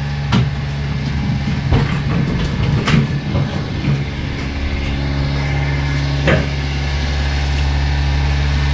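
A steady low mechanical drone with a few sharp knocks scattered through it, the loudest about three seconds in.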